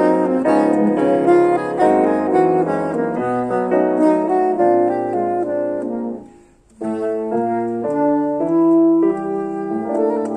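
Soprano saxophone playing a melody over grand piano accompaniment, with a brief break just after six seconds in before both come back in.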